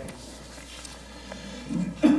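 Low room noise with a steady low hum and a couple of faint clicks; a faint voice begins near the end.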